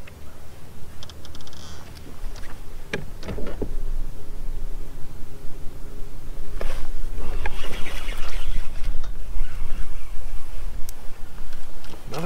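Fishing reel and line sounds as a bass is hooked and reeled in, over a low steady rumble that grows louder about two seconds in, with a busier stretch of noise in the middle.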